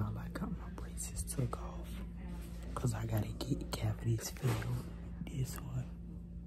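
A person talking quietly, close to a whisper, in short broken phrases, over a steady low hum.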